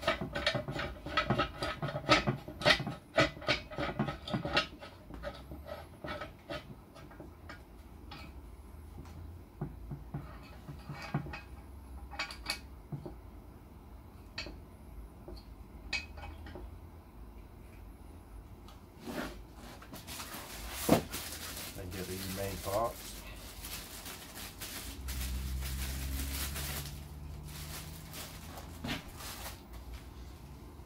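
Metal parts of a microscope stand clinking and ringing as the arm and stopper collar are worked on its steel pole: a quick run of knocks in the first few seconds, then scattered clicks. Later comes handling noise with rustling and one sharp knock about two thirds of the way in.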